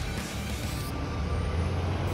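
Street traffic with a heavy truck's engine making a steady low rumble, under background music.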